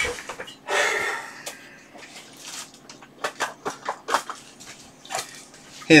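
Rummaging for a small component at a workbench: a rustle about a second in, then a scatter of light clicks and knocks from parts and packets being handled.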